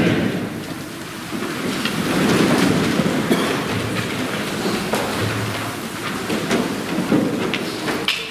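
A church congregation sitting down: a steady rustle and shuffle of many people moving, with scattered knocks and creaks.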